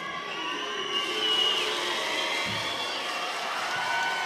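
Arena crowd noise: spectators shouting and making all the noise they can while an opposing player shoots a free throw.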